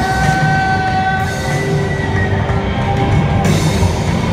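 Live rock band playing loud: electric guitars, bass guitar and drum kit, with a long held high note through the first half and cymbal crashes near the end.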